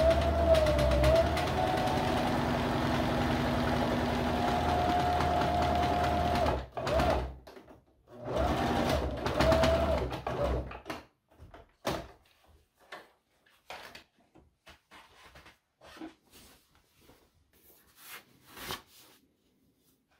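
Janome electric sewing machine stitching a seam in fabric: one steady run of about seven seconds, with a motor whine that wavers in pitch, then a shorter run of about three seconds. After that come scattered light clicks.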